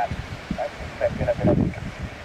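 Wind buffeting the microphone in low rumbling gusts, strongest past the middle, with brief snatches of faint speech.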